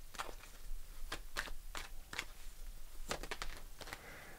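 Tarot deck being shuffled by hand: a string of soft, irregular clicks as the cards slap and flick against each other.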